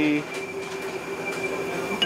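Steady mechanical hum of commercial kitchen equipment, with a thin high whine held throughout.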